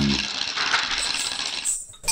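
Plastic shekere shaken, the beads strung around its body rattling against the shell in a steady dry rattle that eases off and cuts off sharply shortly before the end.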